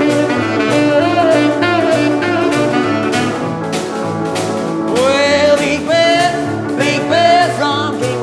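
Rhythm and blues trio playing an instrumental passage: a saxophone lead with notes that slide up into long held tones about five, six and seven seconds in, over a repeating upright-piano bass figure and a steady snare-drum beat.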